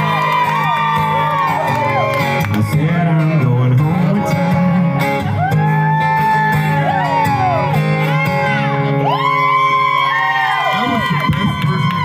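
Live acoustic guitars playing a song together, with a man's voice singing over them into a microphone.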